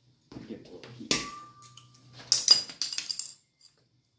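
Metal hand tools clinking against each other and the floor: one sharp strike about a second in that rings briefly, then a quick cluster of metallic clinks a little past the middle.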